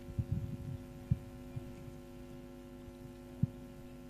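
A steady electrical hum, the mains buzz of the sound system. Over it come a few dull low thuds: a cluster in the first half second, one about a second in, and the loudest about three and a half seconds in.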